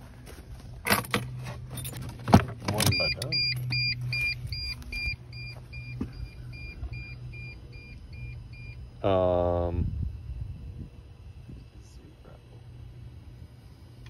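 Ignition key switched on: a few clicks, then the steady low hum of the T1N Sprinter's in-tank electric fuel pump running, with an electronic warning beep repeating about twice a second for some six seconds. The pump is working but pushing against a kinked hose in the test rig, so little pressure reaches the gauge.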